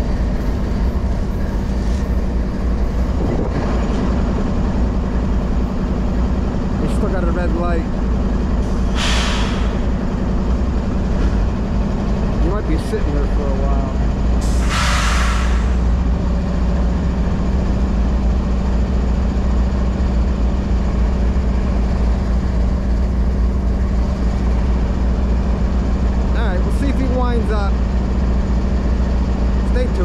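Norfolk Southern diesel freight locomotives running with a steady low engine hum, with two short hisses of released brake air, one about nine seconds in and one about fifteen seconds in.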